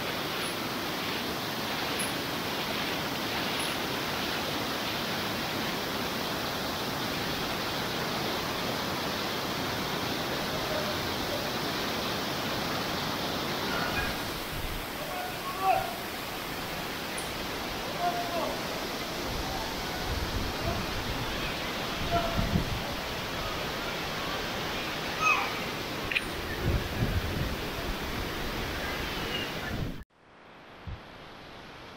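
Fast mountain stream rushing over rocks in a steady loud rush, heard close while wading through the rapids. About halfway the rush becomes a little duller, and a few low thumps come in near the end.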